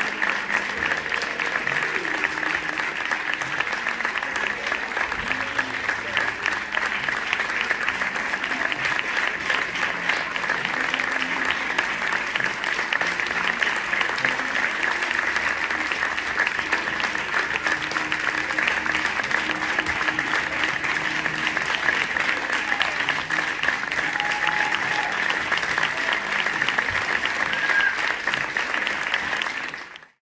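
Audience applauding steadily, a dense, unbroken clapping.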